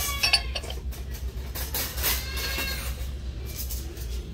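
Ceramic bowls clinking against each other and the metal store shelf as a stacked pair is set down, a few sharp clinks near the start, over a steady low background hum.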